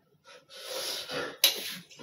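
A man's breathy, stifled laughter: a run of short, airy puffs of breath with one sharper burst near the end.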